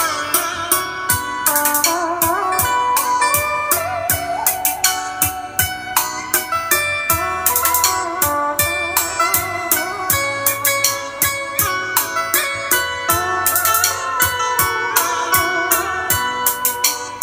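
A pair of JBL M21 speakers playing back the instrumental introduction of a Vietnamese ballad, with the bass turned off. A wavering plucked-string lead melody plays over a steady beat.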